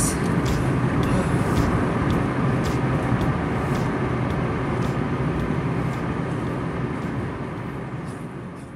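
Fiat Uno Mille cruising at road speed, heard from inside the cabin: steady engine hum under continuous tyre and road noise. Faint light ticks repeat about twice a second.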